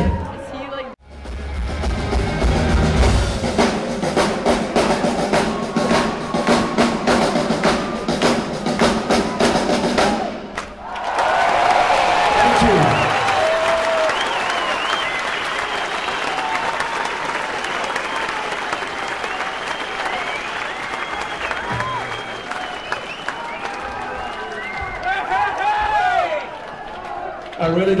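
Live rock band playing with a steady, heavy drum beat over sustained low notes for about ten seconds, stopping abruptly. Then the concert crowd cheers, shouts and whistles for the rest of the time.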